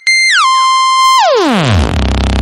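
Synthesized cartoon-style comedy sound effect: a loud electronic tone that drops a step early on, holds, then slides steeply down to a deep low pitch, with a rushing hiss building as it falls.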